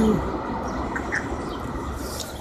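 Steady low rumble of city traffic, with a faint short chirp about a second in.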